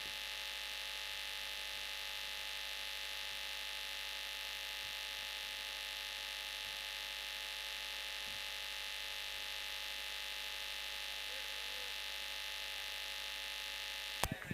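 Steady electrical hum and hiss on the audio line, made of several fixed tones over a constant hiss, with nothing else heard.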